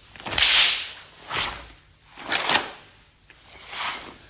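A karateka's gi swishing sharply with each technique of a kata, four times about a second apart, the first the loudest.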